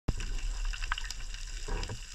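Underwater ambience heard through a camera underwater: a steady low rumble with scattered sharp clicks and crackle, and a short gurgling whoosh near the end.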